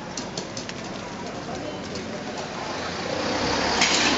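Outdoor street background noise that swells gradually, likely a vehicle passing on the road. A few faint clicks come in the first second, and a brief hiss comes just before the end.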